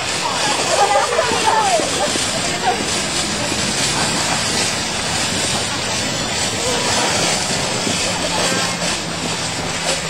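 Girls' high voices calling out indistinctly in the first couple of seconds, over a steady rushing noise from a group moving along quickly.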